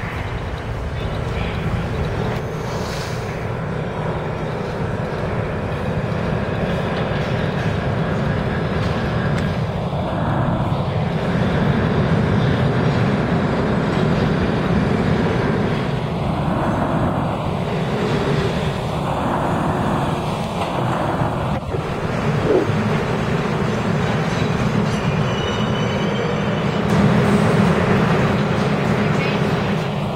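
New York City subway train rumbling along the track into the station, a steady heavy roar with whooshing swells as cars pass, about ten seconds in, several times between about 16 and 22 seconds, and again at the end.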